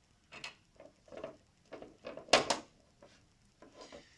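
Plastic egg-turning disc of a small incubator being handled on its plastic base: a string of light knocks and scrapes about every half second, the loudest a little past halfway.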